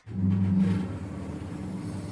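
Elevator sound effect: a steady low mechanical hum of the lift travelling after its call button is pressed, louder for about the first second, then settling lower.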